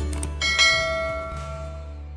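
A couple of light clicks, then a bell-like chime struck about half a second in that rings and slowly dies away. It comes from a subscribe-button sound effect and sits over the low sustained tones of background music, which is fading out.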